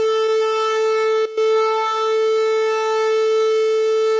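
Shofar (ram's horn) blown in one long, steady note, with a brief catch in the tone a little over a second in.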